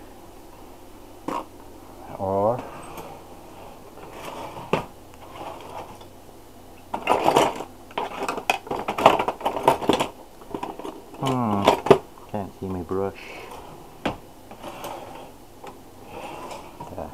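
Kitchen utensils clattering and knocking as a utensil drawer is rummaged through, with scattered clicks and a dense burst of clatter lasting a few seconds midway. A man's voice comes in briefly a couple of times.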